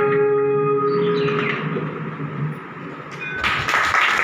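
Music with a guitar part ends and fades out over the first two to three seconds, then a burst of applause breaks out near the end.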